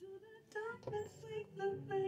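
A song playing, with a woman's voice singing a slow melody in a series of short held notes.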